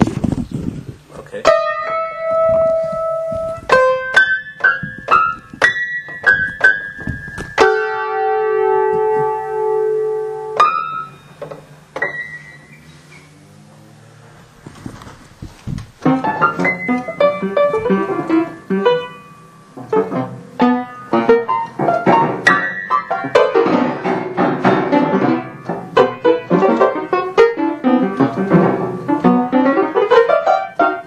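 Rippen upright piano, its front panel off, played in free improvisation: a few sparse notes and chords left to ring, a near pause about twelve seconds in, then from about sixteen seconds a dense, busy run of many quick notes and clusters.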